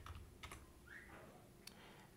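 Near silence broken by a few faint computer-keyboard keystrokes, three separate clicks spread across two seconds.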